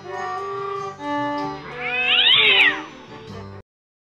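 Violin bowed in slow sustained notes, interrupted for about a second by a loud, high wail that rises and then falls in pitch over the playing; the sound cuts off abruptly near the end.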